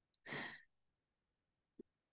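A woman's short, breathy exhale about a quarter second in, followed by a faint click near the end.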